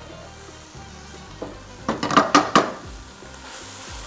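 Minced meat with peas and carrots sizzling in a frying pan while a wooden spatula scrapes it out and knocks against the pans; a quick run of loud scrapes and knocks about two seconds in.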